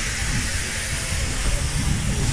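Steam locomotive departing, steam hissing steadily from its cylinder drain cocks over a low rumble.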